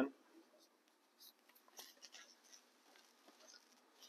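Faint, scratchy rustling as a paper towel is dabbed and rubbed over the hard resin surface of a model scene, a few soft scrapes between about one and three and a half seconds in.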